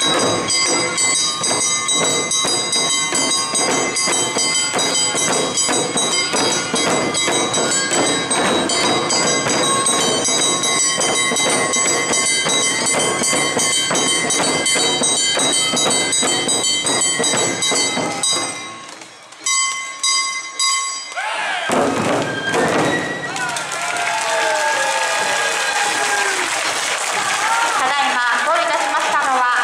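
Awa odori band music: large hand-held taiko drums beaten in a fast, even rhythm with a ringing kane gong, stopping about two-thirds of the way through. After a short lull, voices call out loudly.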